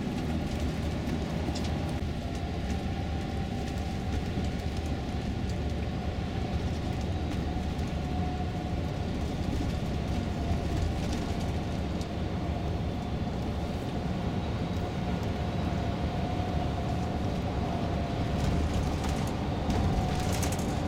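Steady engine and road noise inside a Mercedes-Benz Travego coach cruising along a country road, with a faint steady whine over the low rumble.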